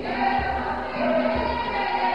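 Gospel music: a choir of voices singing together over sustained notes, with a steady low beat.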